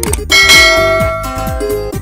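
A bright bell-like chime, the notification-bell sound effect of an animated subscribe button, rings out about a third of a second in and fades over about a second and a half, over electronic background music with a steady beat.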